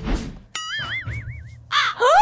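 A brief noisy burst, then a comic sound effect: a wavering, whistle-like tone that starts abruptly and wobbles up and down in pitch several times a second for about a second, ending in another short burst.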